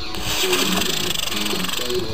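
Model rocket motor firing at liftoff: a loud, steady rushing hiss that starts right away and eases off near the end.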